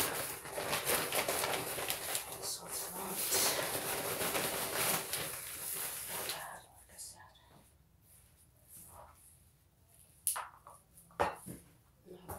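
Rustling and crinkling from hands working with soil and plastic containers for about six seconds, then much quieter, with two sharp knocks near the end.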